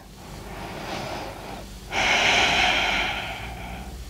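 A woman breathing audibly: a soft breath in, then a louder breath out starting about two seconds in and lasting about a second and a half.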